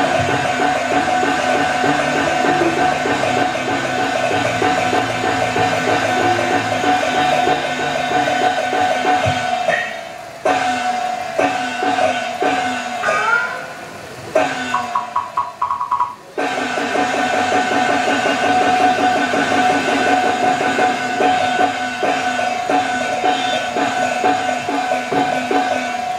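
Taiwanese opera (gezaixi) ensemble accompaniment: a sustained melody line over a rapid, dense percussion beat of drum and wooden clappers. The texture thins out about ten seconds in to a few sliding notes and a short quick repeated figure, then the full ensemble comes back in about sixteen seconds in.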